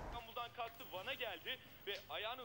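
A person speaking, with the sound thin and lacking its highest frequencies.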